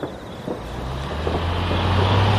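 City bus drawing up to a stop, its low steady hum growing louder as it approaches.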